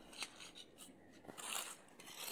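A steel mason's trowel scraping and tapping in wet concrete around steel rebar. The scrapes are faint, with a sharp click about a quarter second in and a harsher scrape about a second and a half in.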